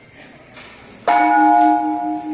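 Temple bell struck once about a second in. Its tone rings on with a slow, pulsing waver.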